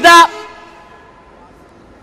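A man's loud voice through a public-address system ends a shouted word in the first moment, and its echo rings on and fades into low background noise.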